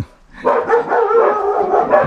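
A dog giving one long, wavering, pitched cry that starts about half a second in and runs on for about a second and a half.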